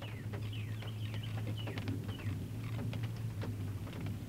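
Small birds chirping: many short, quick falling chirps scattered throughout, over a steady low hum.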